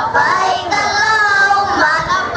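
A group of children singing together into a microphone, their voices held on long notes.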